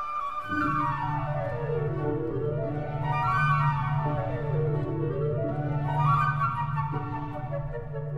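Background music: runs of quick notes sweep down and back up, twice, over a held low note that comes in about half a second in.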